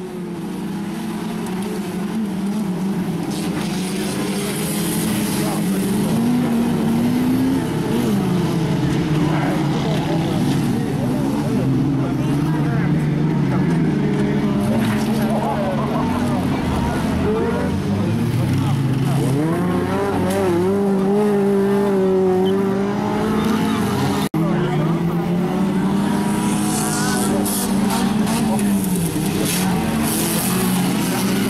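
Several autocross cars' engines racing together on a dirt track, revving up and down as the pack passes, with overlapping engine notes rising and falling. The sound cuts out for an instant about three-quarters of the way through.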